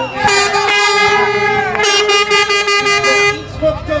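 A horn blown in one long steady note of about three seconds, with the upper part of the sound changing partway through.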